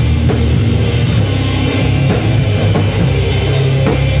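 Live band playing loudly on bass guitar, drum kit and electric guitar. A heavy bass line dominates, with repeated drum and cymbal hits over it.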